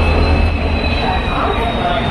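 An Indian Railways passenger train rolling slowly into the platform. A steady, thin high-pitched squeal rings over a deep rumble from the coaches, and the rumble dies down about a second in.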